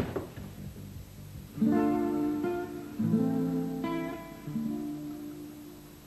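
Background score on acoustic guitar: a few slow strummed chords, each left to ring, fading away near the end. A short knock sounds right at the start.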